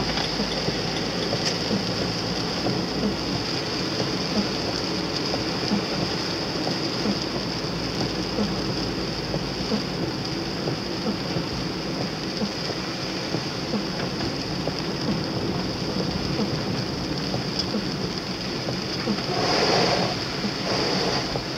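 Steady road and rain noise inside a moving car: tyres hissing on wet asphalt under the engine, with raindrops ticking on the bodywork and windscreen. A louder swell near the end is an oncoming car passing on the wet road.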